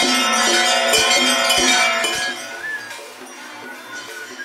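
Metal bells ringing in overlapping, sustained tones with sharp clinks, fading down about halfway through.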